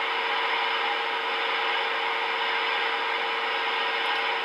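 Steady receiver hiss from an RCI 2970 N4 10-meter radio's speaker, turned up loud, with a faint steady tone running through it. This is the radio's background noise during a sensitivity check, with only a very weak test signal at its input.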